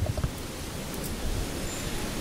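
Steady outdoor background noise: an even hiss over an uneven low rumble, with a few faint clicks near the start.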